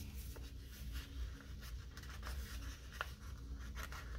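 Soft paper rustles and a few small crackles as a sticker sheet in a sticker book is handled and a sticker is peeled off it, over a low steady hum.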